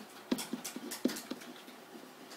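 A pen stylus tapping and scratching on an interactive whiteboard as words are written: a quick run of short, light taps over a faint scratchy rustle.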